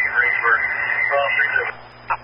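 Fire department two-way radio transmission: a burst of static and hiss with faint, garbled speech underneath, keyed off shortly before the end.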